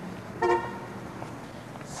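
A single short car horn toot about half a second in, over a steady low hum of street traffic.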